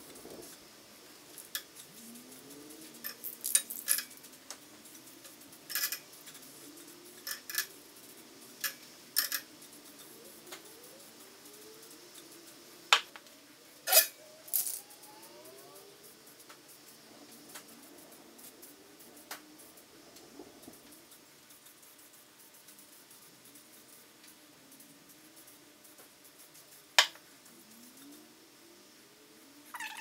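Aerosol spray paint can sprayed in short bursts close to a bike frame's tubes, with clicks and rattles from handling the can between bursts. The loudest bursts come about halfway through and again near the end.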